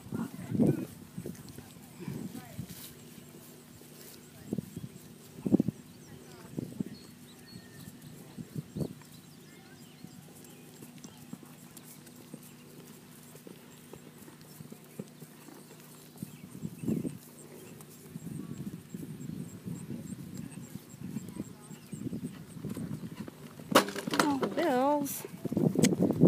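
Horse's hooves thudding on a sand arena as it canters a jumping course, heard as scattered dull thuds. A person talks near the end.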